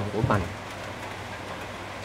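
A man's voice ends a short phrase, then a steady, even background hiss of outdoor ambience carries through the pause.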